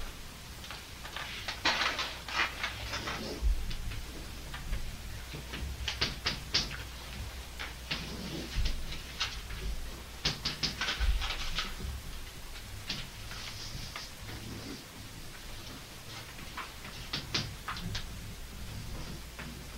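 Chalk scratching and tapping on a blackboard as lines and circles are drawn: short scratchy strokes in several bursts with pauses between.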